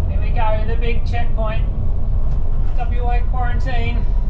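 Steady low rumble of engine and road noise inside a moving bus, with a voice talking indistinctly over it in two short stretches.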